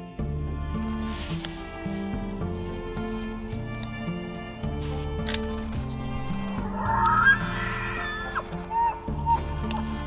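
Bull elk in rut bugling: a high, whistling call lasting over a second about seven seconds in, then a couple of shorter, lower notes, heard over soft background music.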